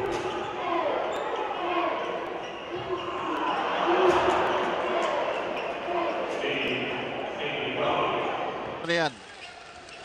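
Live basketball game sound in an arena: a ball bouncing on the hardwood among crowd noise and voices. The sound drops away near the end.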